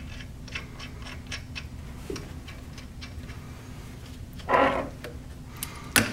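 Light, scattered metal clicks and ticks of bolts and parts being handled and threaded by hand into a torque limiter assembly on a steel chain sprocket. A brief vocal sound comes about four and a half seconds in.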